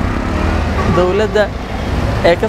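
A man speaking briefly about a second in, over steady low street-traffic noise from passing cars.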